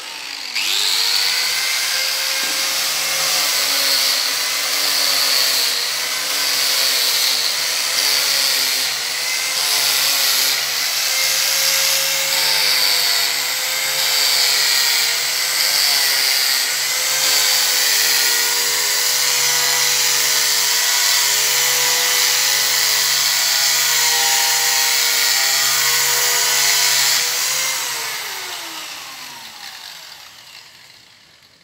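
Electric angle grinder running against the edge of a wooden door, its whine wavering in pitch as it is pressed into the wood. It is switched off near the end and winds down with a falling whine.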